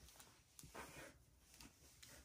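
Near silence: room tone with a few faint rustles of burlap ribbon being handled.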